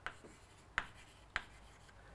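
Chalk writing on a blackboard: three short, sharp taps of the chalk against the board, at the very start, about a second in and a little later, with quiet scratching between them.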